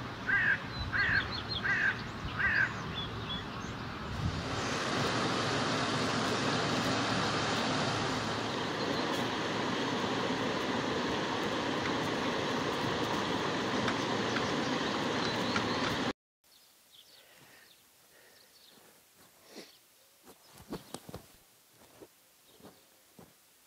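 A bird calls four times, about half a second apart. A loud, steady rushing noise then sets in and stops abruptly about 16 seconds in, leaving faint soft chirps and clicks.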